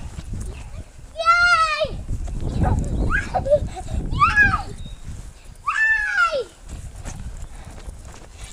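Young children squealing and shrieking at play: several high-pitched squeals, each under a second long, the last one sliding down in pitch, over a low rumble of noise.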